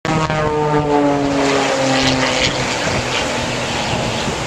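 Propeller-driven aerobatic airplanes flying past. The engine drone drops slowly in pitch over the first two and a half seconds as they go by.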